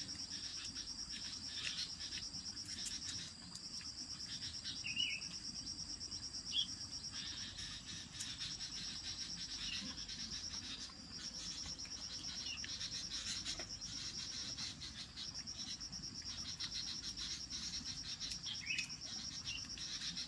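Insects chirring in a steady, high-pitched pulsing trill that breaks off briefly a few times, with a couple of short rising chirps over it.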